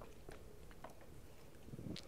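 Near silence: faint room tone with two or three faint clicks.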